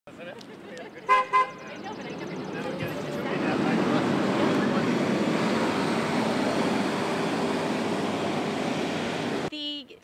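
A vehicle horn gives two short toots about a second in. A steady wash of traffic noise and voices then swells up and holds, and cuts off abruptly just before the end.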